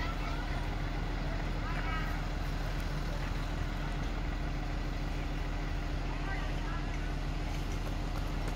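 A vehicle engine idling steadily, a low even hum, with faint distant voices about two seconds in and again near six seconds.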